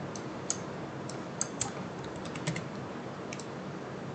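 Irregular clicks of a computer mouse and keyboard, about a dozen over a few seconds, some in quick runs, over a steady faint hiss.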